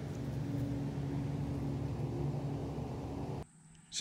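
A steady low mechanical drone, such as a motor or engine running in the background, that cuts off abruptly shortly before the end.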